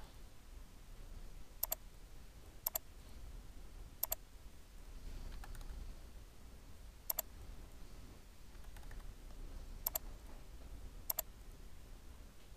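About six sharp clicks from a computer mouse and keyboard, spaced a second or more apart, several of them heard as quick double clicks, over a faint low room hum.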